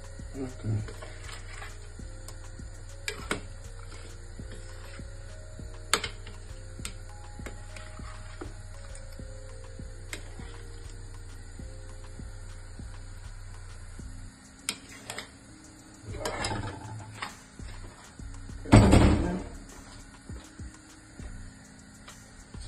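Soft background music and a steady low hum, with scattered small clicks and taps as hands season tofu cubes in a metal bowl. The hum stops about two-thirds of the way in, and a few louder rustling, clattering handling sounds follow, the loudest near the end as the bowl is moved.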